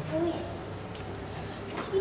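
A cricket chirping: a high, steady trill pulsing a few times a second without a break.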